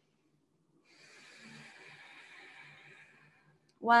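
A woman's slow, faint breath, a soft hiss lasting about two and a half seconds and starting about a second in.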